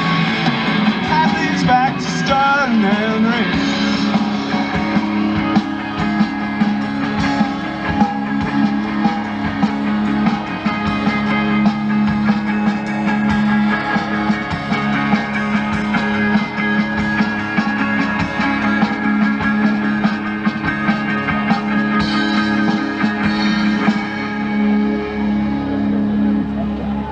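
Live rock band of electric guitars and drums playing an instrumental passage of the song after the last vocal line, steady and loud, with a low note held under the guitars.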